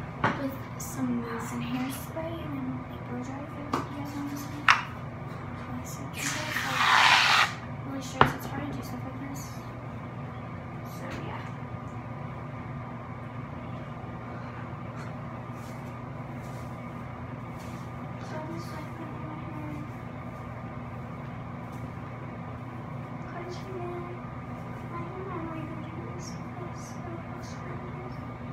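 A steady electrical hum, with a few sharp clicks and a short loud hiss about six to seven seconds in.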